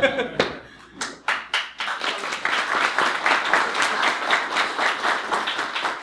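A small audience laughs briefly, then breaks into steady applause from about a second in.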